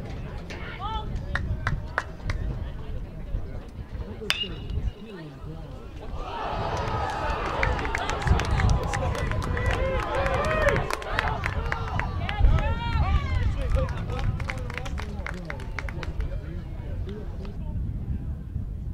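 A single sharp, ringing crack of a metal baseball bat hitting the ball about four seconds in, followed by spectators shouting and cheering with scattered clapping for a hit that scores two runs.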